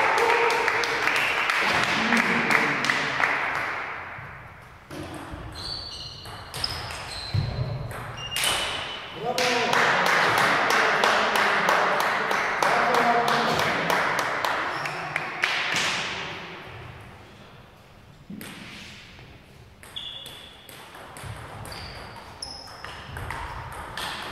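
Table tennis balls giving scattered sharp clicks with short high pings in an echoing sports hall, under a background of voices between rallies.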